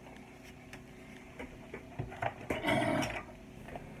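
A few small clicks from a hobby knife and a plastic model part being handled, with one short cough about two and a half seconds in.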